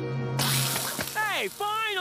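A burger patty hits a hot grill and sizzles, starting suddenly about half a second in. Over the sizzle come two long vocal cries that fall steeply in pitch, and a held musical note fades out beneath them.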